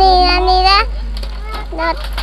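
A woman talking to a small child; a short, quieter voice-like sound near the end, likely the child answering. A steady low hum runs underneath.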